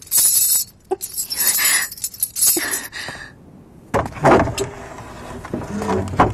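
A metal chain rattling and clinking in three short jangling bursts as it is pulled and shaken, followed about four seconds in by a heavier thud.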